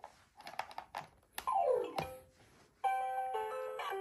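Electronic toy tray of an Infantino baby activity seat playing a simple chiming tune that starts near the end, after a few clicks of small hands on the plastic tray and a short falling tone.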